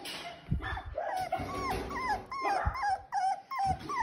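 Puppies whining in a quick run of short, high, wavering calls, about three or four a second, starting about a second in, with a few soft thumps among them.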